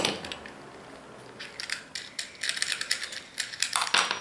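Small plastic and metal construction-kit parts being handled: a sharp knock, then an irregular run of light clicks and rattles from about a second and a half in, ending in another knock.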